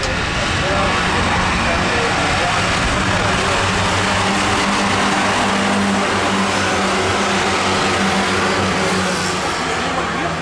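Engines of a pack of Ministox stock cars (Minis) running together around the track, a loud, steady mixed engine noise.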